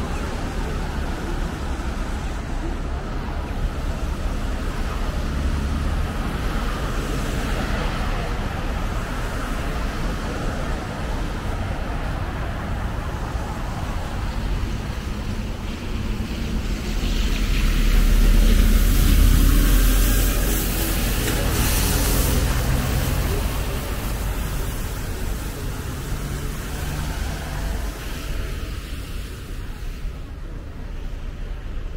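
City road traffic: a steady rumble of cars driving past on a wide road, swelling as a vehicle passes close about two-thirds of the way through.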